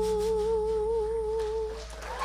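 A woman's voice holding one long final note. It is steady at first, then wavers into vibrato, and cuts off near the end, over a low, ringing upright bass note.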